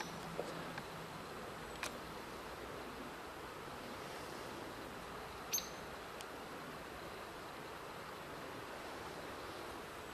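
Quiet winter woodland ambience: a faint steady hiss with a few small ticks, and a brief high chirp about five and a half seconds in.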